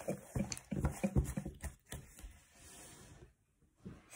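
A deck of oracle cards being handled and shuffled: a run of soft taps and clicks over the first two seconds, then a faint hiss of cards sliding against each other.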